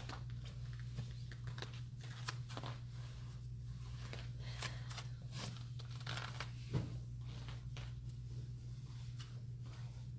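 Rustling of satin-like sheets on floor mats as a person rolls from front to back and shifts about, with scattered soft clicks and a thump about seven seconds in, over a steady low hum.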